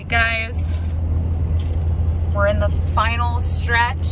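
Steady low rumble of a car on the road, heard from inside the cabin, under a woman's voice in short bursts.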